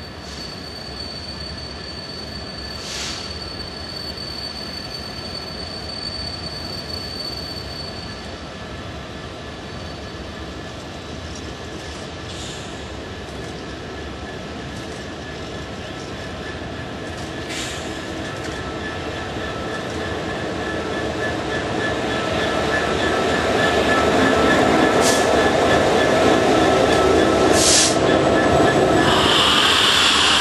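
Class 66 diesel-electric freight locomotive, its two-stroke V12 diesel engine working, approaching and growing steadily louder until it passes close near the end. The hopper wagons behind it then begin to run by.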